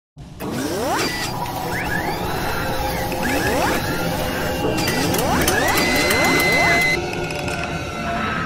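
Sound design for an animated logo intro: mechanical clanks and ratcheting clicks with several rising whooshing sweeps, over music. Near the end the texture changes as the logo sting arrives.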